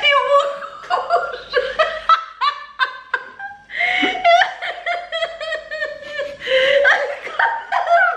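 A woman and a man laughing hard together, in repeated short bursts, with one long drawn-out laughing note about halfway through.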